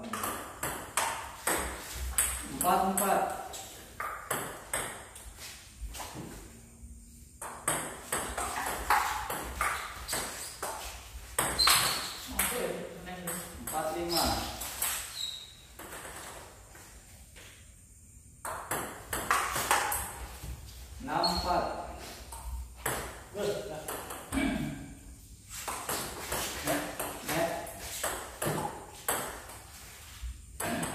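Table tennis rallies in a doubles match: the ball clicking quickly back and forth off paddles and the table, in runs broken by short pauses between points.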